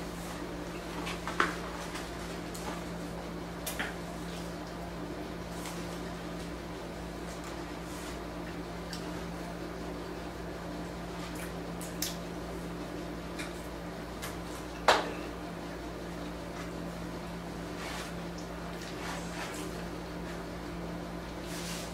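Eating and food-handling sounds: quiet chewing and the handling of fries and their paper takeout box, with a few sharp clicks or taps, the loudest about three-quarters of the way through, over a steady low hum.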